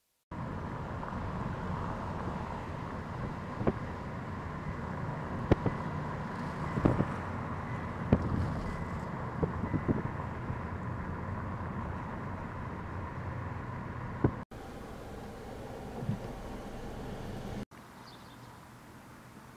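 Steady outdoor ambient noise with wind on the microphone, a faint steady tone and several sharp clicks and knocks scattered through the middle. The sound breaks off abruptly twice near the end.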